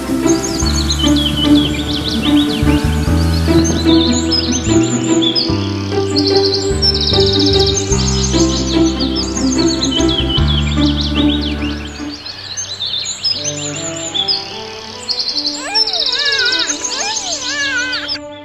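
Birds singing, with many repeated high chirps and trills, over background music with sustained low notes; the low notes of the music drop out about twelve seconds in.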